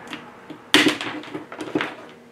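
Tile nippers snapping a piece off a porcelain tile: one sharp crack about three-quarters of a second in, followed by several lighter clicks.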